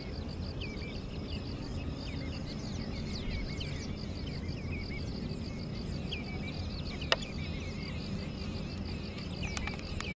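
Birds calling in many short, overlapping chirps, with a steady high trill like an insect's and a steady low rumble beneath. A single sharp click comes about seven seconds in.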